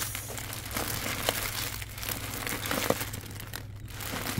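Clear plastic packaging on children's costume butterfly wings crinkling irregularly as a hand sorts through the bagged wings on a shelf.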